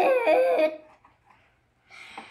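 A young girl's wordless, drawn-out vocal sound, wavering in pitch, for about two-thirds of a second at the start. A short noise follows near the end.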